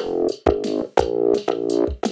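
Electronic drum loop with a synthesized ZynAddSubFX bassline, hits landing about twice a second over sustained buzzy bass notes. The bass patch is high-passed with a steep filter, so it has no sub-bass yet.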